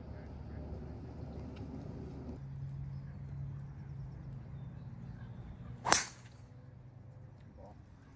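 A golf club striking the ball on a full swing: one sharp, loud crack about six seconds in. Before it, a low rumble cuts off abruptly a little over two seconds in, leaving a faint steady hum.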